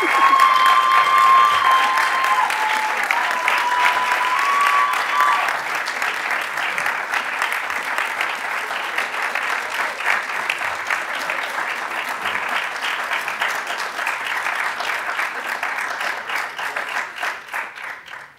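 Audience applauding steadily, with a few sustained cheers over it in the first five seconds. The clapping thins out and dies away at the very end.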